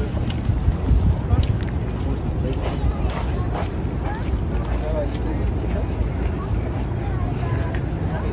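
Wind rumbling on a phone microphone over the steady noise of city street traffic.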